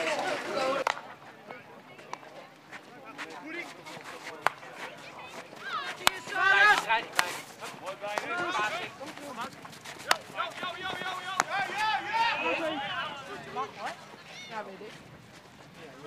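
Field hockey match: players shouting calls to each other, with sharp clacks now and then of sticks striking the ball. In the first second, indoor chatter with clinking glasses.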